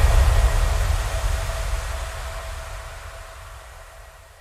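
The closing tail of a dubstep track: a low rumble and a hissing noise wash left after the last hit, fading steadily away.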